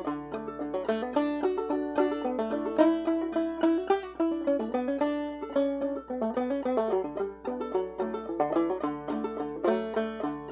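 Open-back banjo played clawhammer style: a fiddle-tune melody of single plucked notes mixed with downward brushed strums, in a steady rhythm.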